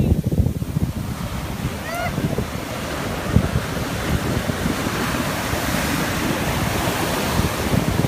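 Ocean surf washing up the beach, its foamy hiss growing louder over the last few seconds, with wind buffeting the microphone.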